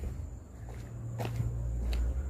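A person's footsteps on a paved road, a few faint steps over a low rumble.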